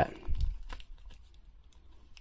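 Faint, scattered small clicks and rustles of hands handling a plastic action figure, working its cape off.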